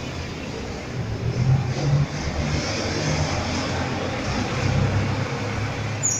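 Traction elevator car travelling down the shaft to the landing, heard through the closed hall doors as a steady rumble with a low hum.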